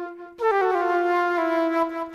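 Solo flute improvising: a held note fades out, and after a brief breath a new phrase begins about a third of a second in. It moves quickly through a few notes to a long sustained tone that falls near the end before another short break.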